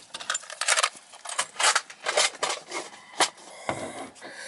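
Irregular light metallic clicks, taps and scrapes, a few per second, like handling against sheet metal.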